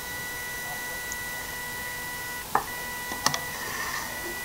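Small yellow DC gear motors of an Arduino robot car, driven through an H-bridge, give a steady high whine. The whine cuts out briefly about two and a half seconds in and comes back with a click, and another click follows a moment later. The motors are straining: the car is weighed down by its breadboard and can hardly move.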